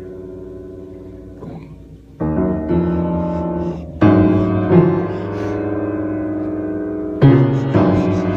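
Upright piano played by a baby's feet: clusters of several keys struck together about five times, starting some two seconds in, each chord left ringing into the next.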